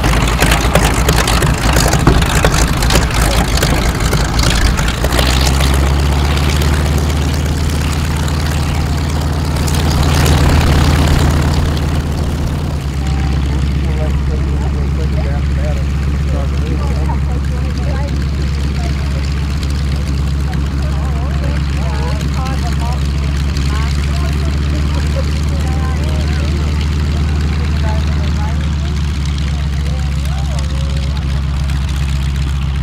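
North American Harvard's Pratt & Whitney R-1340 Wasp radial engine running at low power with the propeller turning, as the aircraft taxis. The first few seconds are rougher, there is a brief louder swell about ten seconds in, and then it settles to a steady low drone.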